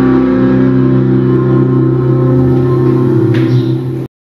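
A chord on a hollow-body electric guitar ringing out steadily as the final held note of a song, with a light touch on the strings near the end. The sound cuts off suddenly at the end.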